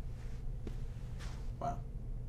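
Steady low room hum with a few faint breath-like noises, and a single short spoken 'well' near the end.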